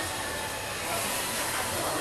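A steady hiss of background noise, even throughout, with no distinct knocks, clicks or tones.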